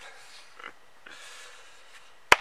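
Quiet, breathy sounds of a person's soft laugh, with a short puff about half a second in, over a low background hiss.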